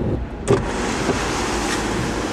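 A sharp click about half a second in as a Mercedes-Benz W126's passenger door is opened, followed by a steady wash of street and traffic noise coming in through the open door.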